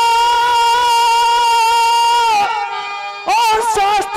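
A singer's voice through a stage PA, holding one long high note with a slight waver that ends about two and a half seconds in. After a short quieter gap, a new sung phrase with a bending melody begins near the end.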